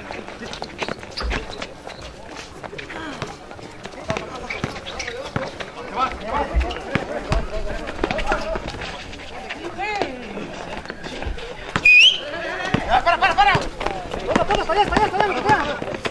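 A basketball bouncing on a concrete court amid players' running footsteps, with short knocks throughout. People talk and shout, the voices growing busier from about six seconds in.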